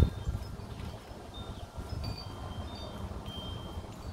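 Wind chimes ringing faintly now and then, a few short high notes at different pitches, over a low steady rumble of outdoor background noise.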